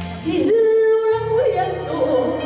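A woman singing a Spanish copla into a microphone over backing music, swelling into one long held note that bends up and then slides down in an ornamented run. The low accompaniment drops away briefly and comes back in under the note.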